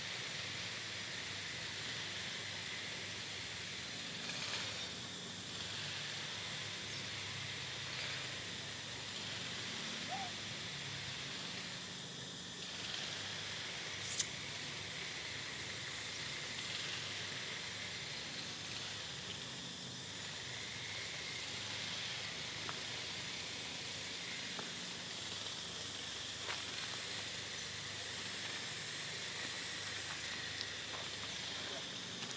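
Steady outdoor background hiss, high and even, with one brief sharp high-pitched click about halfway through.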